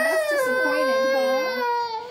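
A toddler crying: one long, high wail held for nearly two seconds, sinking slightly in pitch and breaking off near the end.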